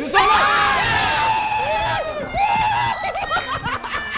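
Several people screaming together in one long, high-pitched shriek lasting about two seconds, then a second, shorter scream past the halfway point, as a wooden Jenga tower topples.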